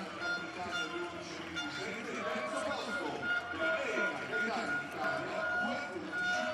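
Indistinct voices of several people talking at the pool venue, with a thin steady high tone running through most of it.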